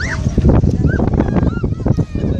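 A dog whimpering and yipping: three or four short high cries, each rising and falling in pitch, over a steady low rumble of wind and beach noise.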